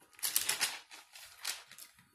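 Bible pages rustling as they are leafed through, in several short bursts.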